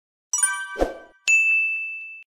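Sound-effect chimes: a bright chime of several high tones about a third of a second in, a short soft low pop just after, then a single clear bell-like ding a little over a second in that rings on and fades.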